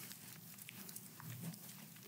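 Near silence with faint rustling and a few soft ticks of thin Bible pages being turned by hand.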